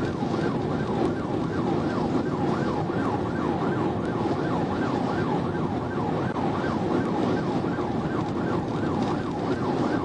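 Police cruiser's electronic siren in a fast yelp, a rapid rise-and-fall wail repeating several times a second. It is heard from inside the car at highway speed, over steady road and engine noise.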